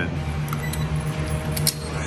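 A few light clicks of keys and a steel door's latch as the door is unlocked and pulled open by its metal handle, over a steady low hum.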